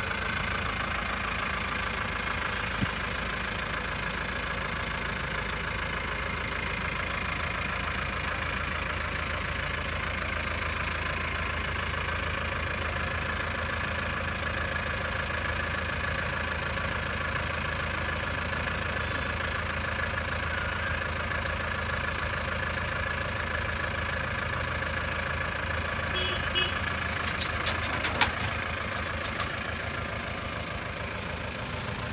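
Tata 207 pickup's diesel engine idling steadily while its hydraulic tipper raises the load bed, with a few sharp metallic clicks and knocks near the end.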